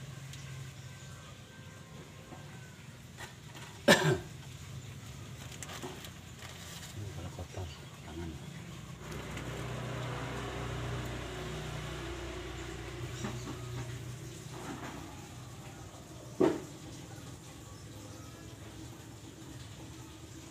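Two sharp knocks, one about four seconds in and another about twelve seconds later, over a low steady hum, with a stretch of rushing noise in the middle.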